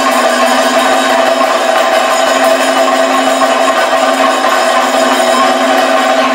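Kathakali percussion ensemble playing loud and fast: chenda and maddalam drums struck in a dense roll, with a steady ringing tone running through it.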